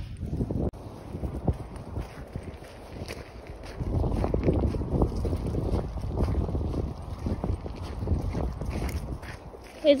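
Wind buffeting a phone's microphone, a low rumble that grows stronger about four seconds in, with a few faint scattered knocks.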